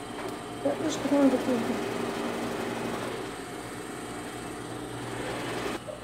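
A steady mechanical hum with a few constant low tones. A faint voice is heard briefly about a second in, and the hum cuts off suddenly near the end.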